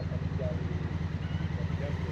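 Motorcycle engine idling steadily, a low even hum.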